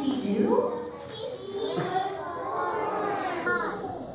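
Many young children's voices chattering and calling out at once, a loose overlapping hubbub of small voices in a large room.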